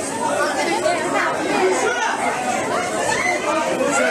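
Crowd of shoppers in a shop, many voices talking over one another in a steady din as people jostle to grab bread.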